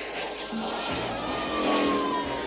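Cartoon motorcycle engine sound effect with one long tone sliding slowly down in pitch as the bike comes in, over background music.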